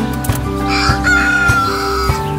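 A rooster crowing once, a call of just over a second that sags slightly in pitch toward the end, over background music.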